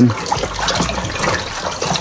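Warm water sloshing and swirling in a plastic bucket as it is stirred hard with a long plastic spoon, mixing bentonite into the water for a wine kit.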